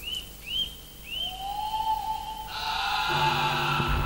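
Soundtrack sound design: short rising whistles repeat about twice a second, then a long held tone rises slowly. A sustained chord swells in over them, and deep low notes join near the end as it grows louder.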